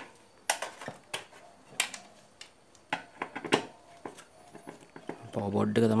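A screwdriver working screws in a hi-fi unit's sheet-metal chassis: a string of sharp metal clicks and clinks at irregular intervals, with a man's voice starting near the end.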